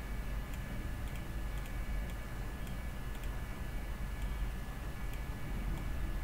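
Computer mouse clicking a few times at irregular intervals over a steady low electrical hum and hiss.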